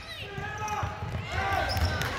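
Irregular low thuds of a basketball bouncing and players running on a hardwood gym floor, with spectators' voices in the background.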